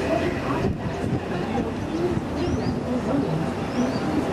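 Engine of a river boat running steadily under way, with indistinct voices talking over it.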